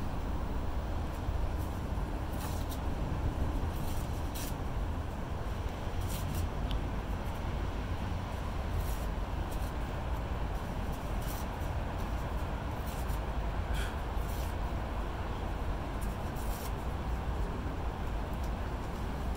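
A steady low rumble of outdoor background noise, with occasional faint rustles and clicks as hands handle torn seed paper and potting soil in a plastic tub.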